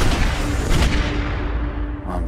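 Loud gunshots: one bang at the start and another just under a second in, each trailing off into a rumble, over a low held music note.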